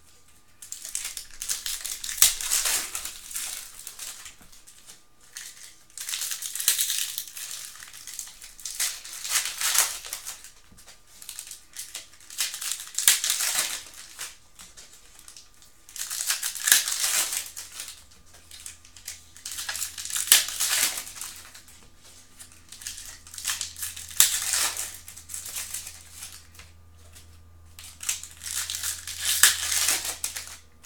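Foil wrappers of Panini Prizm football card packs being torn open and crinkled by hand, in repeated crackling bursts every few seconds with quieter handling between.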